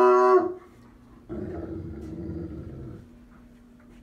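Bloodhound baying: one loud, deep-pitched call that breaks off about half a second in, followed by a quieter low rumble lasting about two seconds. It is the young dog's protective, aggressive reaction to new people.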